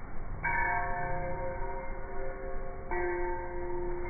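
A bell-like chime struck twice, about two and a half seconds apart, each several-toned strike ringing on steadily.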